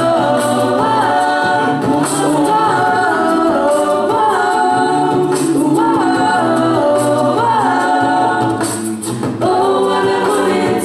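Female a cappella group singing into handheld microphones: several voices holding sustained chords in harmony with a low part underneath and no instruments. The sound dips briefly near the end before the chord comes back in.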